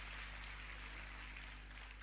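Faint congregation applause dying away, over a low steady hum.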